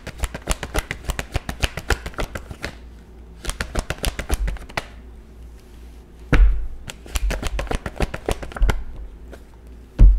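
A tarot deck being shuffled by hand: runs of fast card clicks in three bursts with short pauses between. A louder single knock about six and a half seconds in as the deck or a card meets the table.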